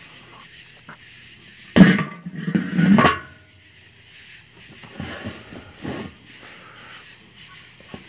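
The metal lid of a Weber kettle grill set down on the bowl: a sharp clank about two seconds in, then rattling and a ringing clank as it settles about a second later. Two softer knocks follow, near five and six seconds.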